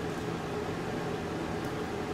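Steady background hum and hiss of room noise, with a faint constant low tone and no distinct events.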